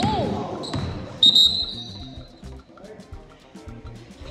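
A basketball bouncing and sneakers squeaking on a hardwood gym floor, then a loud sharp high-pitched squeal about a second in as play stops. Background music with a steady beat runs under the latter part.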